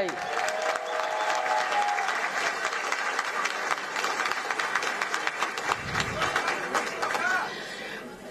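Audience applauding steadily, dying away over the last second or so.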